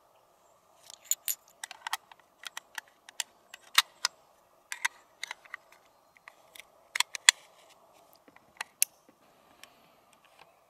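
.243 cartridges being pressed one at a time into a detachable rifle magazine: an irregular series of sharp metallic clicks as the brass rounds snap past the magazine lips.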